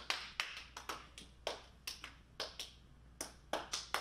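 A few people clapping by hand, sparse and not in step, about three claps a second.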